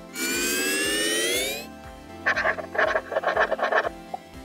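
Logo sting over soft background music: a rising synthesized sweep for about a second and a half, then a quick run of short warbling pitched blips.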